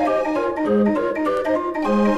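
Odin 42-key mechanical street organ, played from perforated cardboard books, performing a swinging jazz arrangement: quick, detached melody notes over a slower bass line.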